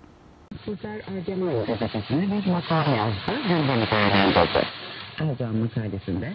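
Shortwave AM broadcast from the Voice of Turkey on 9460 kHz, received through a Perseus software-defined radio: a voice cuts in about half a second in, its sound thin with the top end cut off.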